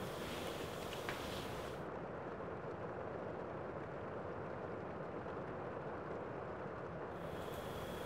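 Steady faint rushing background noise, room tone and microphone hiss, with a single faint tap about a second in. The stamping itself is barely audible.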